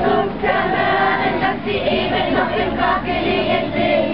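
A group of young children singing a song together in chorus, with some adult women's voices among them.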